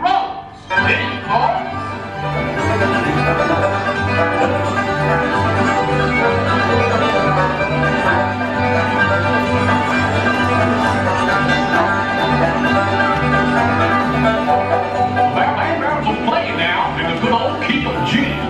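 Country-style band music with banjo and guitar over a bouncing bass line that alternates between two low notes, played loud and steady through the theater's sound system.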